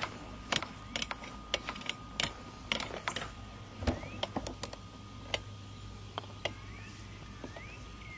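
About a dozen sharp, irregularly spaced clicks of a putter tapping and striking golf balls.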